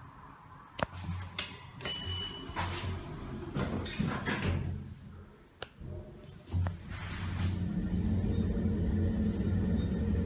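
Richmond traction elevator at a parking level: clicks and clunks as the car doors shut, with a short high beep about two seconds in. From about seven and a half seconds in, the car sets off upward with a steady low hum that grows louder.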